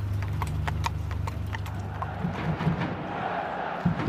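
Horse's hooves clip-clopping on a paved street as it pulls a carriage, a few strikes a second over a low steady rumble. About two seconds in, the hooves and rumble stop and a hazy background noise with a few dull thuds takes over.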